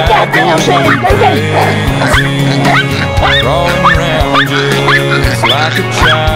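A chihuahua yapping over and over in short, high, rising barks, about two a second, baying at a piglet. A loud pop song with singing plays over it.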